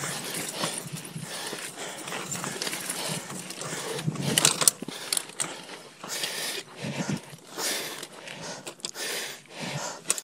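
Mountain bike (2019 Giant Stance 2) rolling along a dirt singletrack: tyre noise on the dirt with frequent rattles and knocks from the bike over bumps, a louder patch of knocking about four to five seconds in.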